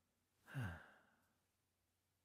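A man's short, breathy "uh" that falls in pitch, about half a second in; the rest is near silence.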